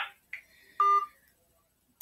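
A single short electronic beep from a smartphone about a second in, the tone that signals the call has just ended.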